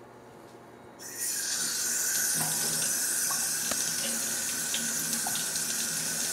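Kitchen tap turned on about a second in, then water running steadily into the sink, with a few faint clinks.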